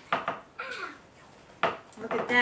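A spoon clinking and scraping against a large mixing bowl while a spaghetti and ricotta mixture is stirred: a few sharp knocks, the loudest about three quarters of the way through.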